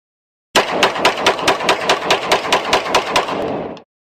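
A burst of automatic gunfire, about five shots a second for roughly three seconds, starting abruptly and cutting off.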